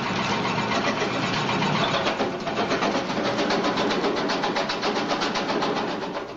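Rock crusher preparing ore samples in an assay lab, running loud and steady with a fast, even rattling pulse as the rock is broken up.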